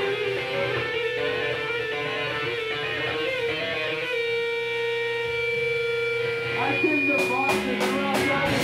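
Rock band playing: electric guitar holding long sustained notes and a ringing chord, with drum and cymbal hits coming back in near the end.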